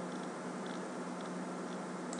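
Steady low electrical hum and hiss of the recording microphone, with a few faint, sparse clicks of a computer mouse.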